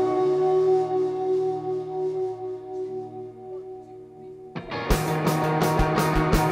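Live indie rock band: held electric guitar notes ringing and slowly fading, then the full band crashes in loud with drums about four and a half seconds in, hits coming about four times a second.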